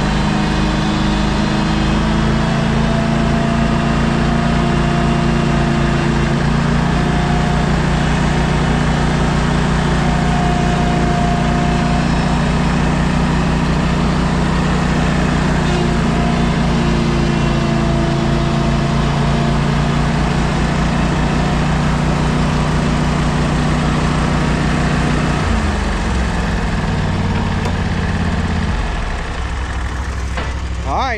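Engine running at steady, held revs while towing a stuck mower out on a strap, its pitch dropping about 25 seconds in as it throttles down.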